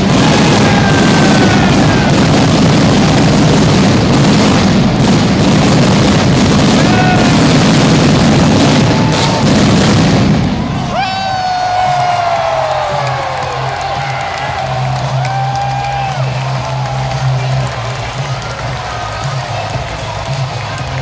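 Arena stage pyrotechnics firing: a sudden loud start and a dense roar for about ten seconds, which then drops away to show music with a crowd shouting.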